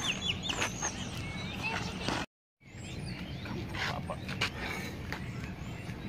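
Outdoor lakeside ambience with small birds chirping now and then over a steady background hum. The sound drops out completely for a moment about two seconds in.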